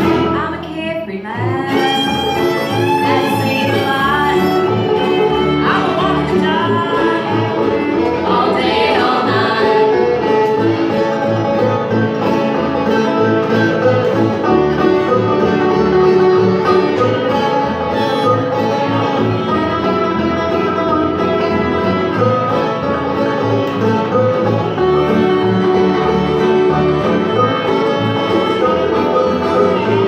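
Live bluegrass string band playing a tune: fiddle, five-string banjo, acoustic guitar and upright bass together.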